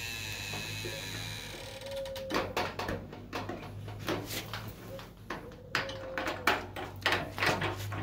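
Plastic honey gate on a stainless-steel honey extractor being handled and opened by hand. From about two seconds in there are irregular clicks and knocks, over a steady low hum.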